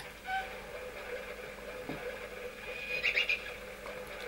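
Quiet gulping and swallowing as a glass of water is drunk down, with a few short, high-pitched sounds about three seconds in.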